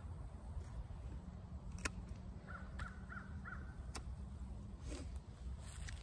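Hand pruners snipping small shoots off a young peach tree: two sharp clicks, about two and four seconds in, over a faint steady background. Between the clicks a distant bird gives four quick calls.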